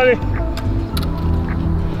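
Low wind rumble on the microphone under faint background music holding steady notes, with a single sharp click about halfway through.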